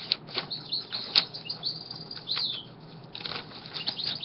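Paper pages of a handmade junk journal being turned and handled, a series of short rustles and flaps, while a small bird chirps in the background.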